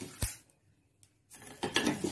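Wooden spatula stirring and scraping whole spices in a metal pan, the dry seeds and pods rattling against the metal. A sharp knock comes about a quarter second in, the stirring stops briefly, and it starts again just after the middle.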